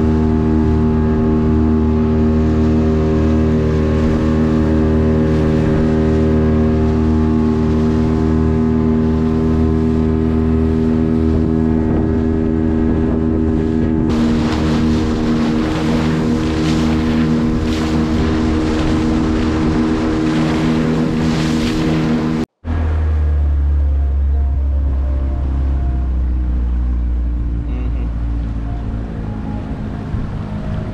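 Outboard motor of a small wooden boat running at a steady speed, with water splashing against the hull from about halfway through. After a sudden cut, the engine runs slower with a lower, deeper tone that eases off near the end.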